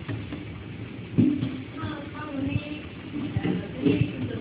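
Automatic four-nozzle liquid soap filling machine running, its pump loud, with a few sudden dull knocks from the machine. Voices can be heard faintly in the background.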